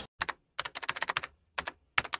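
Computer keyboard typing: a quick, irregular run of key clicks with a short break near the end, laid in as a typing sound effect under an on-screen title.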